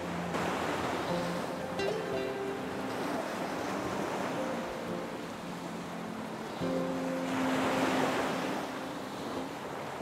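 Ocean surf washing up a sandy beach, the wash swelling near the start and again about seven to nine seconds in. Soft background music with long held notes plays underneath.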